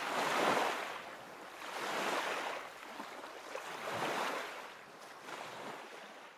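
Sea waves washing in, swelling and ebbing about every two seconds and growing fainter toward the end.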